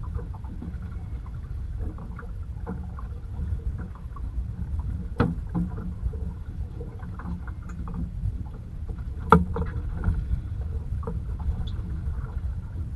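Steady low rumble of water and wind around a small fishing boat drifting at sea, with scattered light clicks and two sharp knocks on the boat, about five and nine seconds in, the second the loudest.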